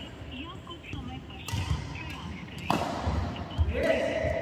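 Badminton rally: two sharp racket strikes on the shuttlecock, about a second and a half and just under three seconds in, with players' feet thudding on the court floor between them.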